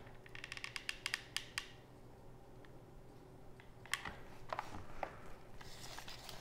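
Light clicks and taps from handling a hot glue gun and a small plastic hovercraft frame: a quick run of clicks in the first second and a half, then a few more taps about four to five seconds in.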